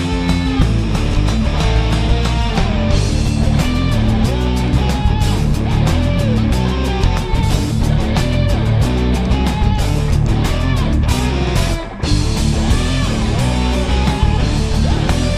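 Live rock band playing loud, dense, distorted rock on electric guitars and drum kit, with a momentary drop in the sound just before the end.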